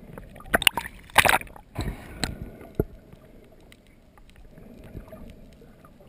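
Underwater sound picked up by a camera below the surface: several sharp clicks and knocks, with two short loud rushes of noise in the first half, the loudest a little over a second in. After that comes a low, steady wash of water noise.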